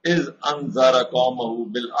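Only speech: a man's voice reading aloud in a measured, chant-like way, the start of a Quranic verse recited in Arabic.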